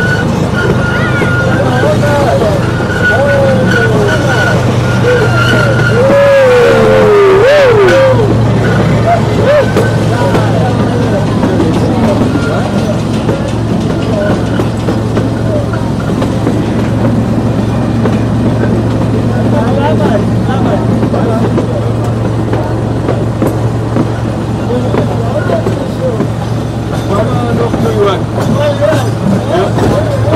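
Small park train running, heard from inside its open carriage: a steady low hum throughout, with a thin high wheel squeal over the first few seconds. Passengers' voices are mixed in over it.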